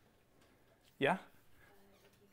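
A single short spoken "Yeah?" with a rising pitch about a second in, amid faint room tone.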